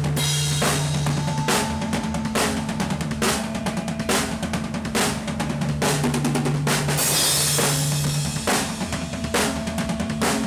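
Heavy rock band playing live, heard from right at the drum kit: kick and snare hits drive a steady beat over held bass and guitar notes. A cymbal wash rings out about seven seconds in.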